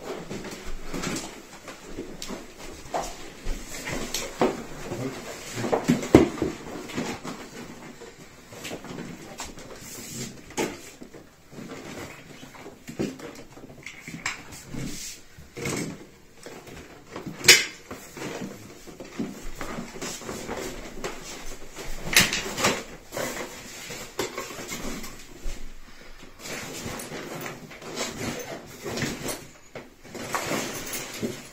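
A deflated inflatable stand-up paddle board's PVC skin and its nylon carry bag being folded, rubbed and stuffed together, with irregular rustling and scraping and a few sharp knocks, the sharpest about six, seventeen and twenty-two seconds in.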